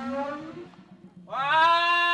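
A stage music cue fades out, then about a second and a half in a voice breaks into one long, loud call held on a single pitch.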